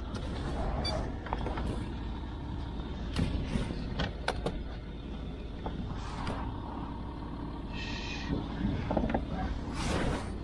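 Land Rover Discovery 4 engine idling steadily with the driver's door open, with scattered knocks and clicks of gear being handled at the door. A brief higher-pitched sound comes about eight seconds in.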